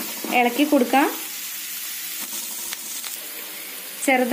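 Chopped onions and curry leaves sizzling in hot oil in a metal pan: a steady frying hiss. A voice speaks briefly in the first second.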